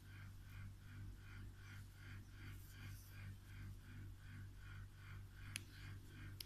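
Near silence: a low steady room hum under a faint, even pattern of soft pulses at about four a second, with one sharp click near the end.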